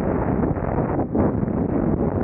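Freefall wind rushing over the camera's microphone: a loud, steady roar of wind noise, easing briefly about a second in.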